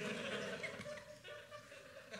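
Audience laughing, dying away over about the first second and then trailing off faintly.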